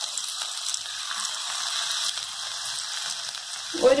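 Onion pakoda (sliced onion in gram-flour batter) deep-frying in hot oil, as fresh fritters are dropped in: a steady, high sizzling hiss.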